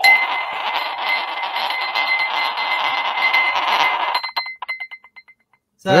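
A sphere magnet spinning and rattling in a drinking glass, driven round by a homemade spherical coil fed from a stereo amplifier, with a steady high tone from the coil's drive signal running under it. It starts suddenly and cuts off about four seconds in.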